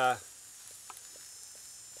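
A few faint light clicks of a spoon stirring rice and vegetables in a frying pan over a campfire, over a steady faint high hiss.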